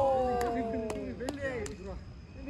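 A man's long drawn-out shout, falling slightly in pitch and held for about a second and a half, with other players' voices calling in short syllables around it. A few sharp clicks are heard through it.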